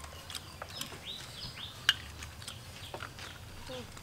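Snail shells clicking and being picked at with small sticks while people eat, in scattered light clicks with one sharper click near the middle. A few short high chirps come about a second in.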